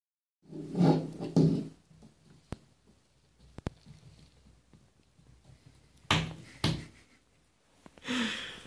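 Hollow bumps and knocks in a bathtub: two loud pairs, one pair about a second in and another about six seconds in, with two sharp ticks in between.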